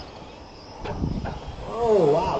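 Low outdoor background noise with two short clicks about a second in, then the announcer's voice starting to speak near the end.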